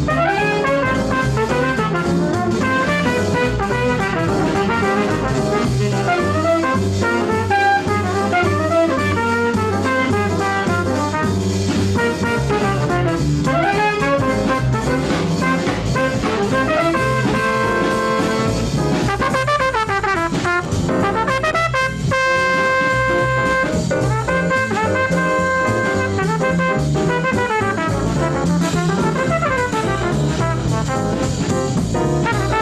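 Early-1950s small-group jazz record of a blues: trumpet with saxophone over piano, bass and drum kit. About three-quarters of the way through the horns hold a long chord.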